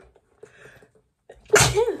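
A woman sneezing once, a short, sudden burst about one and a half seconds in.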